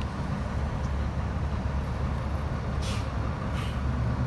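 Steady low outdoor rumble, with two brief hissing bursts about three seconds in.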